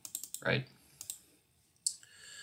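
Three short, separate clicks from a computer's keyboard or mouse, one near the start, one about a second in and one near the end, with a single spoken word between the first two.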